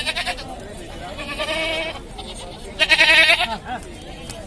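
Goats bleating: two long, quavering bleats, one about a second in and a louder one about three seconds in.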